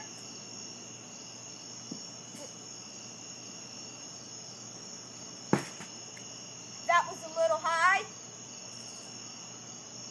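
Night insects, crickets among them, chirring steadily in high-pitched bands. About five and a half seconds in comes a single sharp smack, a pitched baseball hitting the strike-zone target.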